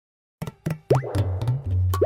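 Silent for a fraction of a second, then bouncy cartoon background music starts: quick percussion hits over a low bass line, with a rising 'bloop' glide about a second in.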